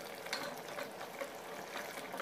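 Wooden spatula stirring thick mutton curry in a metal pressure cooker: a run of faint scrapes and light clicks against the pot.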